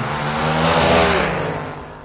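A motor vehicle passing by: engine and road noise swell to a peak about a second in, then fade away.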